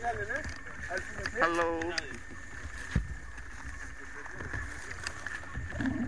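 People's voices outdoors, one of them a drawn-out call about a second and a half in, over a low rumble of wind on the microphone.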